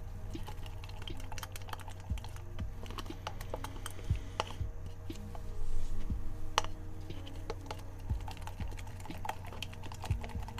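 Semi-gloss heavy gel medium being stirred into acrylic paint: scattered soft clicks, taps and wet smears of the tool working the thick paste, louder for a moment a little past halfway, over a low steady hum.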